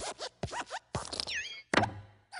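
A quick run of short rasping, zipper-like strokes and clicks, with a brief gliding whistle-like tone that dips and rises midway and a louder burst near the end.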